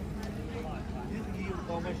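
Passersby talking as they walk past, over a steady low hum and the general noise of a busy outdoor waterfront.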